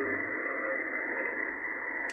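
Steady receiver hiss of 40 m band noise from an Icom IC-775DSP HF transceiver's speaker, tuned to 7.135 MHz in lower sideband. The SSB filter cuts off the top, so it sounds like a narrow, muffled hiss.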